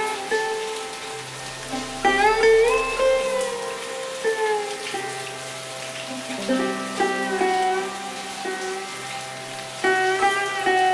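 Slow sitar music: plucked notes with notes bent upward in pitch, one about two seconds in and more from about six and a half seconds, over a steady low drone. Steady rain falls behind it.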